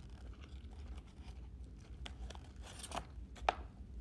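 Light taps and a brief rustle from a paperboard snack box being handled as a toothpick picks out a piece of fried chicken, with the sharpest tap about three and a half seconds in, over a low steady hum.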